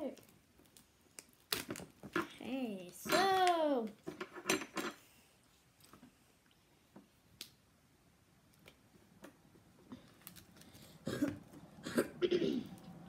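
A child's wordless voice, two drawn-out sounds that rise and fall in pitch, amid a few sharp clicks and rustles from a snack package being handled; the middle stretch is quiet apart from scattered small ticks.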